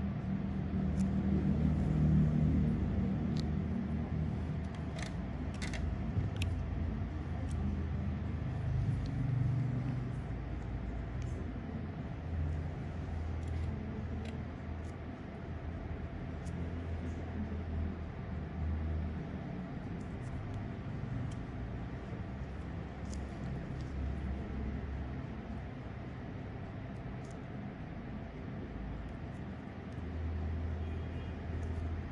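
Low, uneven background rumble with a few faint clicks.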